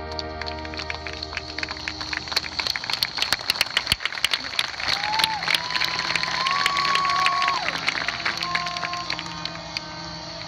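High school marching band playing its field show; its sustained chords fade about two and a half seconds in. A stretch of scattered crowd applause follows over a held, bending instrument note, and the band's chords return near the end.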